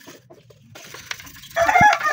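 Faint scrubbing of a toothbrush on the plastic housing of a Panasonic juicer base, then, about a second and a half in, a rooster crows loudly.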